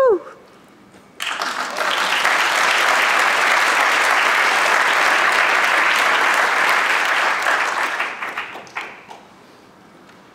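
Audience applauding, starting about a second in, holding steady, then dying away near the end.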